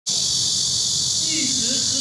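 Cicadas in a steady, high-pitched chorus that does not let up, with a faint voice late on.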